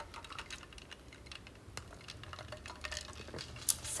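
Faint, scattered small clicks and taps of light handling noise, with a faint low hum underneath.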